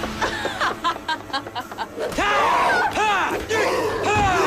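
Shouting and yelling voices: a quick run of short cries about a second in, then long rising-and-falling yells and battle cries through the second half.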